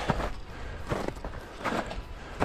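Footsteps of stiff ski boots walking uphill over patchy snow and grass: short, faint steps about three quarters of a second apart.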